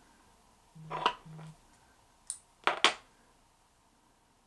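Light clicks and taps of fly-tying tools being handled at the vise: one click about a second in, then three sharp clicks in quick succession near the three-second mark.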